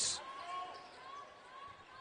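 Low, steady crowd noise in a basketball arena during live play, with a few faint wavering tones over it.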